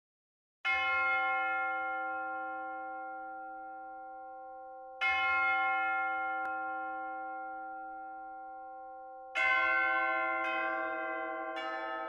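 A bell struck three times, slow and about four seconds apart, each stroke left to ring and slowly fade, then two quicker strokes on other notes near the end.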